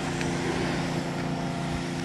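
Steady background machine noise: a motor or engine running at a constant pitch, with a low even drone and no changes.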